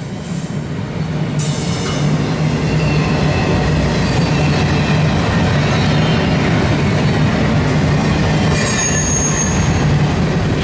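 CSX double-stack intermodal freight train rolling past at speed: a loud, steady rush and rumble of well-car wheels on the rails, getting louder about a second and a half in. Thin high wheel squeals ride over it, a higher one near the end.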